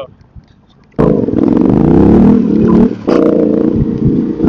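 Yamaha Ténéré 700 parallel-twin with an aftermarket exhaust, running loud under throttle, its pitch rising and falling. It cuts in suddenly about a second in, drops off briefly near three seconds and picks up again.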